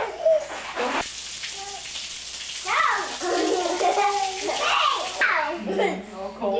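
Water running from a garden hose and splashing onto concrete, a steady hiss, with young children's voices over it in the second half.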